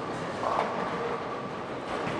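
Steady rolling rumble of a busy bowling alley: balls rolling down the lanes and pinsetter machinery running, with no pin strike in these seconds.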